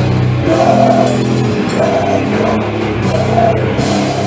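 A heavy rock band playing live, loud: distorted guitar and bass holding low notes that change a few times, over drums and crashing cymbals.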